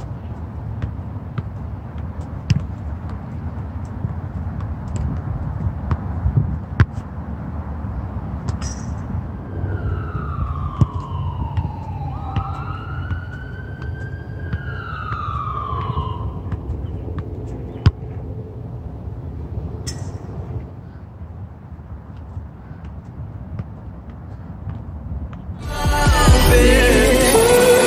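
Soccer ball being juggled and kicked on artificial turf: sharp single thuds every few seconds over a steady low rumble. From about ten seconds in, a siren wails down, up and down again for about six seconds.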